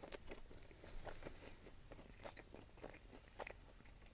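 Faint chewing of a mouthful of soft, doughy garlic cheddar knot, with small wet mouth clicks scattered through.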